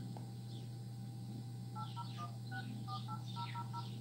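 Smartphone keypad dial tones as a phone number is dialled: about ten short two-note beeps in quick succession, starting a little under two seconds in.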